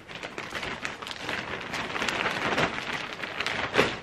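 Close rustling and crinkling as clothes and shopping bags are handled, a busy crackle of small scrapes with a louder one just before it stops.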